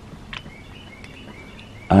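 Faint bird chirps, a few short high notes, over quiet background noise, with a small click about a third of a second in.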